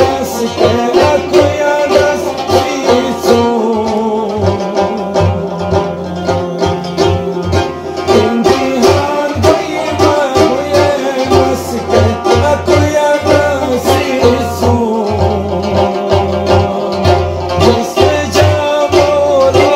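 Devotional ginan sung by a man's voice over a hand-held frame drum (daf) struck in a steady beat, with a plucked melodic accompaniment.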